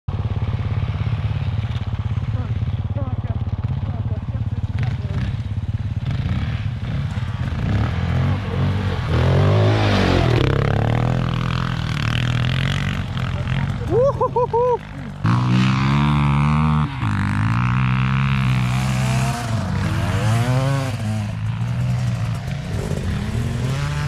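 Motorcycle engines running, revved up and down several times in the second half, with quick rises and falls in pitch as the bikes ride through snow.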